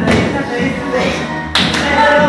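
Two sharp knocks about a second and a half apart, the sound of loaded barbells and weight plates being set down on a tiled floor, over background music with a beat.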